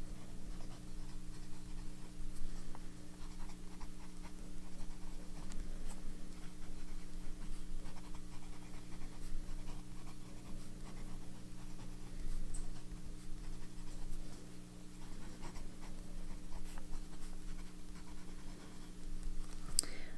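TWSBI Diamond 580 fountain pen with a steel medium nib writing on paper: light scratching of the nib as a line of handwriting is put down. A steady low hum runs underneath.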